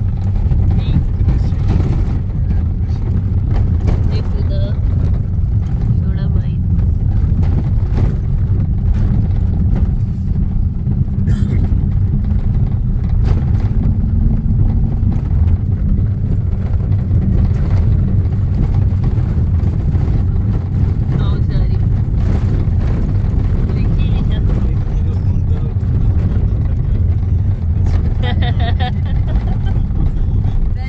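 Steady low rumble of a car driving over an unpaved dirt road, heard from inside the vehicle.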